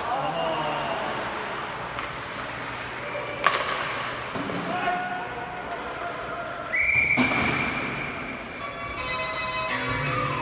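Ice rink ambience with a sharp crack about three and a half seconds in, then a single steady referee's whistle blast of about a second, about seven seconds in, stopping play. Arena music starts near the end.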